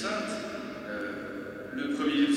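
Only speech: a man talking into a lectern microphone.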